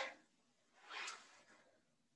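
Near silence, with one short, soft noise without pitch about a second in.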